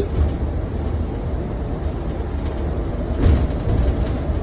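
Interior ride noise of a 2023 New Flyer Xcelsior XDE40 diesel-electric hybrid city bus under way, heard near the front: a steady low rumble of drivetrain and road. A brief louder thump comes a little after three seconds in.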